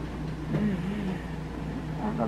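A steady low hum runs throughout. About half a second in, a faint voice makes a short murmur.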